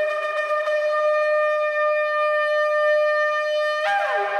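Shofar (ram's horn) blown in one long blast, holding its higher note steady, then sliding down to its lower note near the end.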